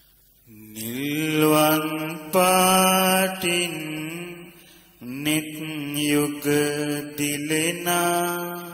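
A Buddhist monk's solo male voice chanting Pali verses in long, drawn-out melodic notes. The first phrase begins about half a second in with an upward glide and is held until about four and a half seconds. A second phrase follows about five seconds in.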